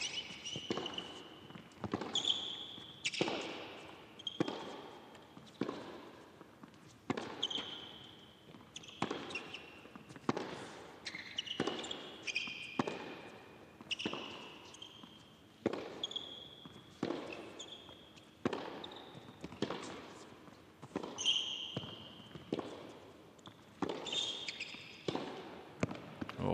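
Tennis ball struck back and forth in a long rally on an indoor hard court, racket hits and bounces coming about once a second, with short shoe squeaks on the court between them. The hits echo in the empty hall.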